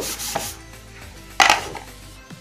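A hand rubbing across a small chalk slate, wiping it clean, with a louder, sharper scrape about one and a half seconds in.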